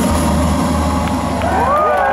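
Last sustained notes of a live synth-pop band, with a steady low drone that thins out about a second in. Near the end, whoops and cheers from the crowd begin to rise over it.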